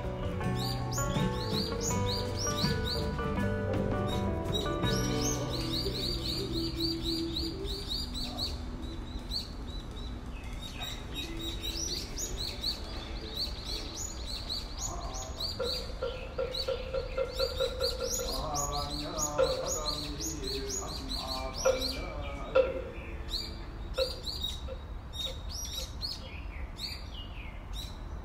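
Many small birds chirping and twittering throughout, with background music under them for the first few seconds.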